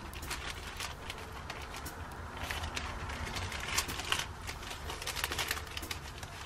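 Clear plastic sleeve and paper sticker sheets crinkling and rustling as they are handled and slid together, in quick irregular crackles that come thickest about halfway through and again near the end.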